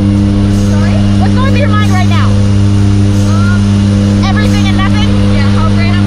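Steady, loud drone of a skydiving jump plane's engine and propeller heard inside the cabin, a constant low hum with a few fixed tones. Voices talk over it throughout.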